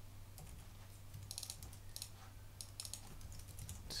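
Computer keyboard being typed on: faint, irregular groups of quick key clicks as a name is entered.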